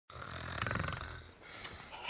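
A man snoring: one long, fluttering snore that swells and fades out over about a second, followed by a quieter breath.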